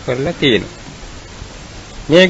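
A Buddhist monk's voice preaching in Sinhala, which finishes a phrase with a falling pitch about half a second in. Then comes a pause that holds only a steady hiss from the recording.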